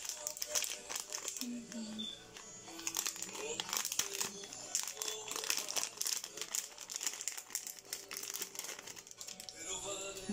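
Small clear plastic bag crinkling as it is handled and opened, many quick crackles throughout, over faint background music.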